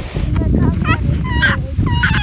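Young children squealing with delight, several short high-pitched squeals that rise and fall, over a steady low rumble.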